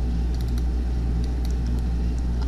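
Steady low hum of background noise, with a few faint clicks from working a computer mouse and keyboard.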